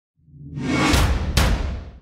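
Intro logo sting sound effect: a swelling whoosh over a deep low rumble, with two sharp hits about a second in, fading away near the end.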